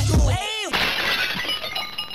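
Outro hip-hop music ends in a quick sweeping effect, followed about three-quarters of a second in by a crashing sound effect like shattering glass, its bright ringing fading away.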